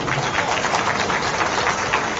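A crowd applauding: dense, steady clapping with no voice over it.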